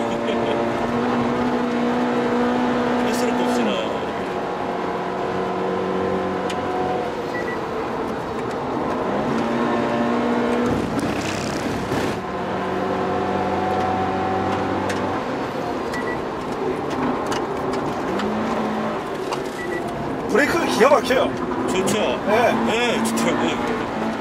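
Toyota GT86's flat-four engine heard from inside the cabin at track speed. Its note holds steady, drops in pitch about four seconds in, then climbs again around nine and eighteen seconds in as the car slows and accelerates through the corners.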